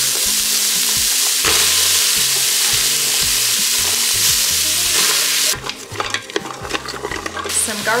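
Chopped carrots, celery and onion sizzling steadily in the hot stainless-steel inner pot of an Instant Pot. About five and a half seconds in the sizzle drops away to a run of clicks and scrapes from a utensil stirring against the steel, and the sizzle picks up again near the end.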